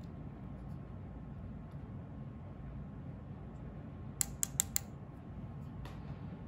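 Depth micrometer's ratchet thimble clicking: four quick clicks about four seconds in and one more near the end, as the ratchet slips at its set measuring force with the spindle seated on the gauge block. Low steady room hum underneath.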